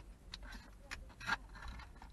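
Scattered light clicks and crinkles of a small clip-on phone camera lens and its clear plastic packaging being handled, the clearest click about a second and a half in.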